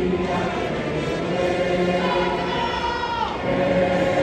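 Many voices singing together, with long held notes that slide downward about three seconds in.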